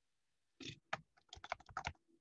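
Computer keyboard keys struck in a quick run of about a dozen clicks starting about half a second in, deleting a word of text letter by letter.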